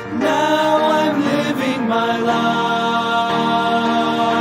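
A gospel vocal quartet singing in close harmony, drawing out long held notes in the song's closing lines.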